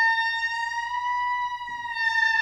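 Solo Rigoutat oboe holding one long high note, its pitch bending slightly upward in the middle and sliding back down near the end.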